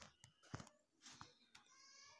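Near silence, with a few faint clicks of a spatula against a kadai as diced potatoes are stirred, and a faint high-pitched drawn-out call near the end.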